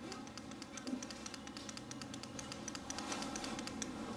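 Students writing on paper worksheets: many small, irregular taps and scratches of pens and pencils over a low, steady room hum.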